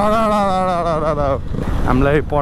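A rider's voice holding one long, wavering note until about a second and a half in, over the steady low running of a motorcycle engine.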